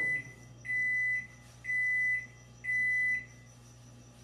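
Microwave oven's end-of-cycle signal: three high-pitched beeps, each about half a second long, one a second, marking that the heating cycle has finished.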